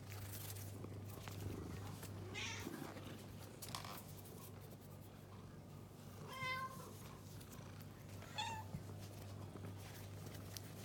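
Domestic cat meows: a faint short call about two and a half seconds in, a clear meow a little past halfway, and a shorter, higher one near the end.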